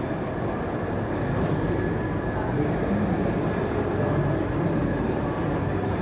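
Steady rumble and hiss of a rail train running in a station, even throughout with no distinct knocks or calls.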